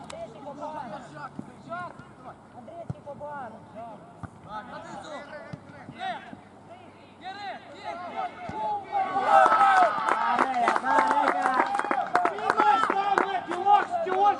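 Footballers and coaches shouting on the pitch during play. About nine seconds in, loud overlapping shouts and cheers break out as a goal is scored.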